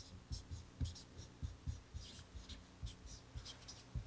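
Felt-tip marker writing Chinese characters on a sheet of paper: a quick run of short squeaky strokes, each with a light tap of the pen, several a second.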